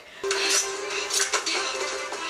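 Steel swords clashing in a sparring fight, several sharp metallic strikes with a ringing tail, from a TV drama's soundtrack over a held note of background music.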